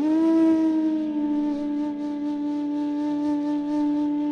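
Bansuri (Indian bamboo flute) in Raag Malkauns, sliding up slightly into one long low note and holding it steadily, with a faint drone underneath.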